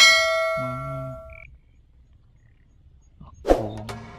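A single bright bell-like ding, a subscribe-button sound effect, struck once and ringing away over about a second and a half. Near the end, intro music with a clicking wood-block beat starts.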